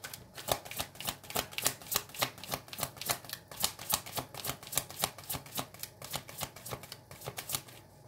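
A tarot deck being hand-shuffled: a quick, even patter of cards slapping together, about four a second.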